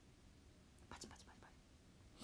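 Near silence in a small room, broken about a second in by a brief, faint whisper or soft mouth sound.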